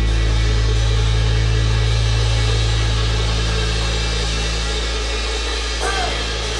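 Live rock band of electric guitars, bass and drum kit playing an instrumental passage: steady held low bass notes under a wash of cymbals and guitar, slowly getting quieter.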